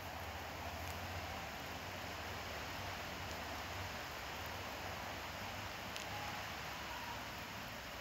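Steady outdoor background noise: an even hiss with a low hum underneath and no distinct events.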